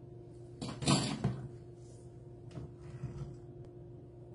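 Kitchen handling noises: a short loud clatter about a second in, then a few lighter knocks and rustles, over a faint steady hum.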